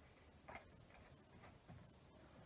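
Near silence with a few faint, irregular ticks and clicks from Pokémon trading cards and their foil booster wrapper being handled.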